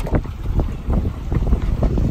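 Wind rumbling on the microphone on a boat at sea, with short irregular slaps of choppy water against the hull.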